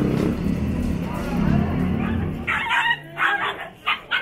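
Background music for the first half, then a small dog yapping in a quick run of short, high-pitched yips.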